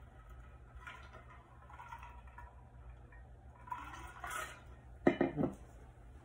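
Low steady hum with faint indistinct sounds, then a quick clatter of three or four sharp knocks about five seconds in.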